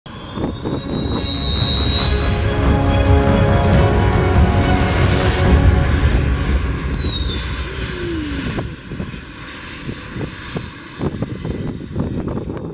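Twin turbofan jet engines of a Cessna Citation CJ3+ running at high power with a loud, high-pitched whine. About seven seconds in the whine falls in pitch and the sound drops away.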